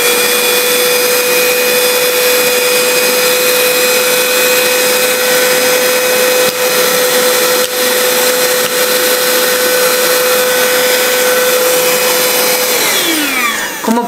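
Cordless handheld car vacuum cleaner running with a steady high whine over a rush of air as it sucks up cereal pieces. It is switched off near the end, and the motor winds down with a falling whine.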